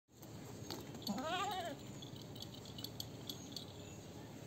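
A goat bleating once: a single short, wavering call about a second in.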